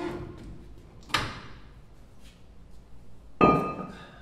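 Three metal clanks from the cast-iron front brake rotor and hub of a 1971 Chevy C10 being jerked off the spindle against the re-fitted nut to knock the grease seal and inner bearing out. The last clank, near the end, is the loudest and rings on briefly.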